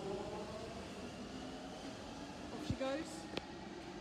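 Steady hum of an Underground station passageway, with faint snatches of distant speech and a sharp click near the end.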